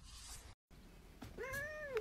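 A cat meows once, about a second and a half in: a short call that rises and then falls in pitch.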